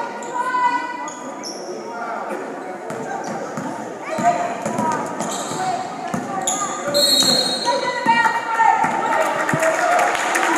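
A basketball dribbled on a hardwood gym floor, with players and spectators calling out, all echoing in the large gym.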